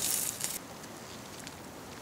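Glowing charcoal embers under a wire grill grate, crackling faintly with a few scattered ticks; a brief hiss in the first half second.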